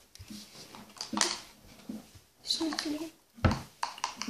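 Quiet child's voice with brief handling noises as a wooden stick stirs liquid in a clear plastic cup, and a dull knock about three and a half seconds in.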